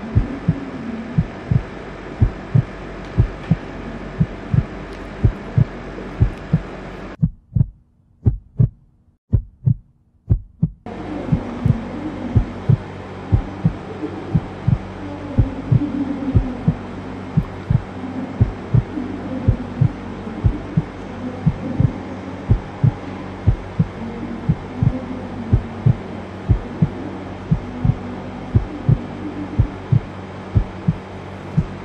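A heartbeat-like sound effect: evenly spaced low thumps, about two a second, laid over classroom room noise. The room noise drops out for a few seconds near the middle, but the thumps carry on.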